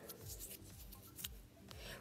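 Faint rubbing and a few light clicks from a hand and a phone being handled close to the microphone.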